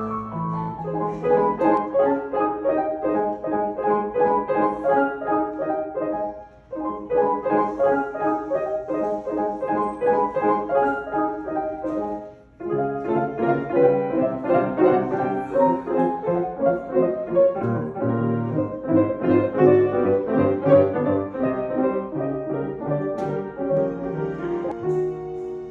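Solo grand piano played continuously in a dense run of notes, broken by two short pauses about a quarter and halfway through.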